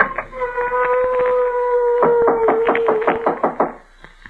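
A held organ chord, a radio-drama scene bridge, sustains and dies away. About halfway through, a fast run of knocks on a door comes in over it.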